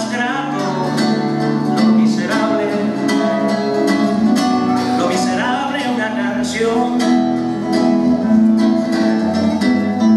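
Acoustic guitar played live, a run of strummed chords and plucked notes that carries on without a break.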